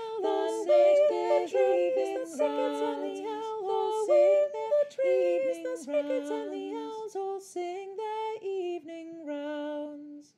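A round sung a cappella by several voices, the parts overlapping in harmony. Toward the end the lines thin out to long held notes.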